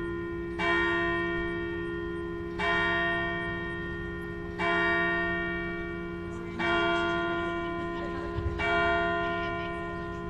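A large bell tolling slowly, struck five times at even two-second intervals, each stroke ringing on and fading until the next.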